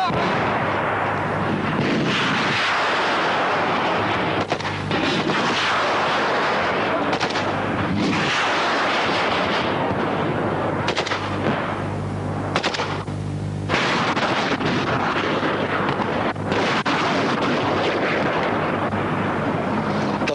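Small-arms gunfire in a firefight: shots in rapid, overlapping runs over a loud noisy background, easing briefly about thirteen seconds in.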